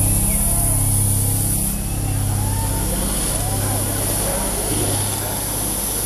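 Club crowd chattering and calling out over a low, pulsing drone from the stage PA, with the stage still dark.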